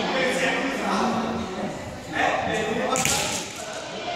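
Nylon play parachute rustling and flapping as the seated ring shakes it, with a louder swish a little past the halfway point, over group chatter echoing in a large sports hall.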